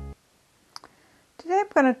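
A held piano chord ends abruptly just after the start, then near silence with two short faint clicks a little under a second in, before a woman starts speaking.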